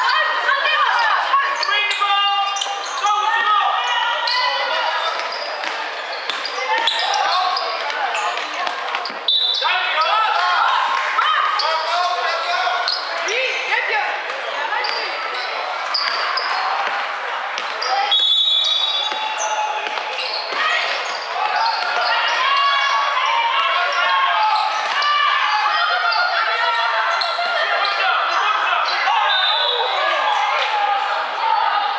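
Sound of a youth basketball game echoing in a large sports hall: continuous voices of players and onlookers calling out, with the ball bouncing on the court. A few short, high-pitched squeals cut through about 2, 9 and 18 seconds in.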